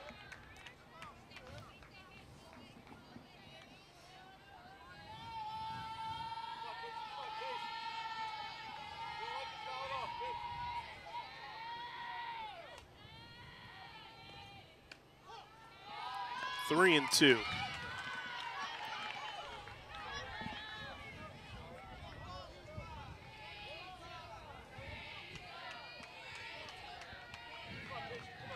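Softball players' voices chanting and cheering in a drawn-out sing-song, in waves between pitches.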